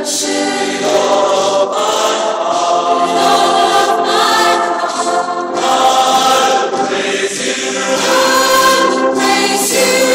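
A youth choir of girls and young women singing a hymn together in held, sustained notes.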